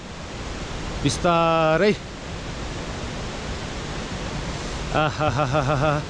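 Steady rushing noise of wind and travel on a rough dirt road. A voice sings a held note about a second in and a wavering line near the end.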